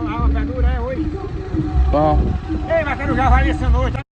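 People talking through most of the clip, over an uneven low rumble.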